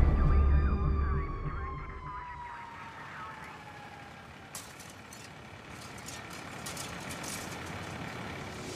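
Music fades out early on, leaving a siren whose pitch slides slowly down over about three seconds. Scattered faint crackles follow in the second half.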